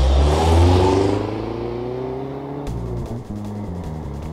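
A car drives off: a loud rush of engine and tyres in the first second, then the engine note rises gently as it fades away. A music jingle starts about two-thirds of the way through.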